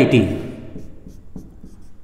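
Marker pen writing on a whiteboard: a quick run of short, faint strokes as letters are written.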